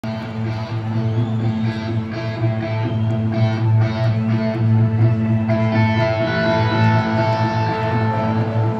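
Rock band playing live on a stadium stage: electric guitars ringing out sustained notes over a steady, held bass note, recorded from within the crowd.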